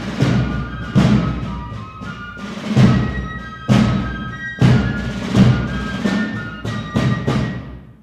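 A military fife and drum corps plays a march. High fifes carry the tune over snare drums, and heavy bass-drum strokes fall roughly once a second. The music ends and dies away at the very end.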